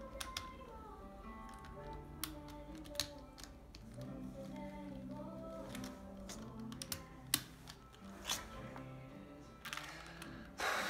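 Quiet background music with scattered sharp clicks of a puzzle cube being twisted by hand; the loudest clicks come about three, seven and eight seconds in.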